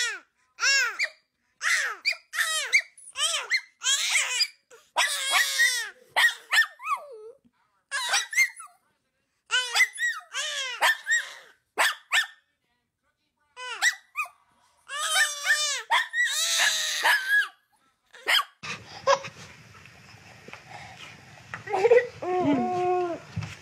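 A baby squealing and giggling in many short, high-pitched bursts with brief pauses between them. In the last few seconds a steady faint hiss comes in.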